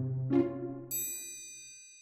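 A short musical sting: two plucked notes over a low hum, then a bright bell-like ding about a second in that rings on and fades away.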